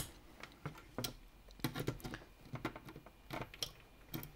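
Light, irregular plastic clicks and taps, about eight or nine of them, as hands handle and seat parts in an open Nerf Rival Nemesis plastic shell.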